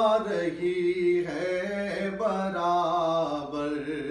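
A man singing a naat, an Urdu devotional poem in praise of the Prophet, solo, in long drawn-out notes that glide and waver between pitches.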